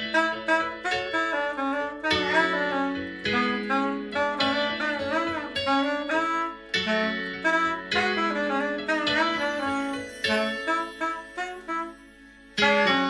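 Straight soprano saxophone playing a solo melody in short phrases, with vibrato on some held notes. Steady, sustained low chords sound beneath it as accompaniment.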